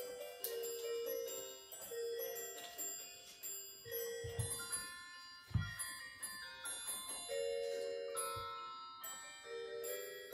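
Background music of chiming, bell-like mallet notes over held lower notes. A couple of soft low thumps come through about halfway.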